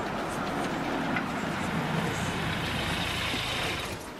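A Renault Scénic car driving slowly up and pulling in: engine running and tyre noise, with a hiss that grows in the second half.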